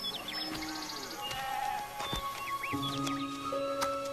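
Background film music of slow, held tones that shift in pitch, with small birds chirping over it.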